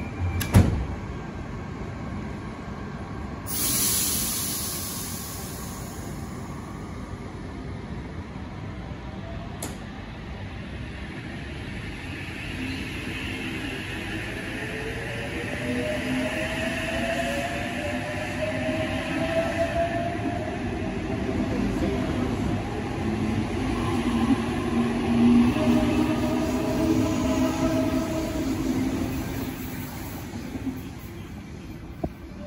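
Sydney Trains Oscar (H set) electric train departing. Its sliding doors shut with a thud just after the start and a hiss of air follows a few seconds later. The train then pulls away, its traction motors whining higher in pitch as it accelerates past and getting louder toward the end before it fades.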